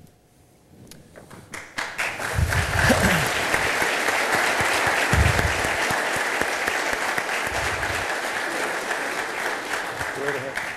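Audience applauding, starting about two seconds in and holding steady.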